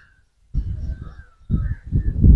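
Crows cawing a couple of times, faint, over a low uneven rumble on the microphone.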